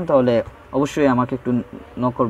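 A man's voice speaking, low-pitched and somewhat buzzy.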